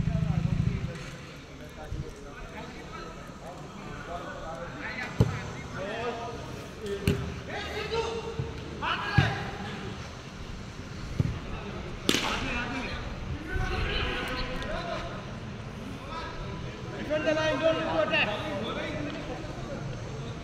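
Players' distant shouts and calls across a football pitch, with several sharp thuds of the ball being kicked. The loudest kick comes about twelve seconds in.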